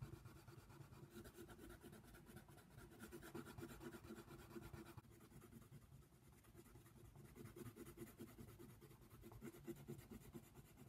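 Faint scratching of a coloured pencil on paper in quick, rapid shading strokes, turning softer about halfway through.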